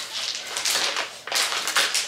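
Clear plastic packaging bag crinkling and rustling as it is handled and pulled open, in a run of short crackles.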